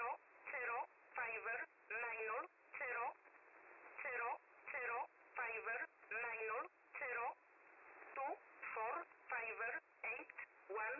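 Shortwave number station E11 heard through a web SDR receiver: a recorded voice reading digits in English at a slow, even pace of roughly one word every three quarters of a second. The sound is thin and telephone-like, with a steady hiss between the words.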